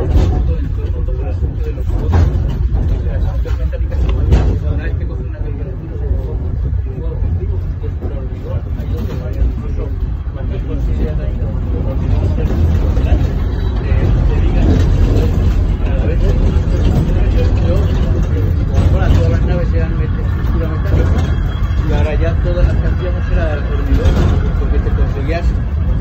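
Funicular car running down its inclined track, a steady low rumble, with passengers talking over it.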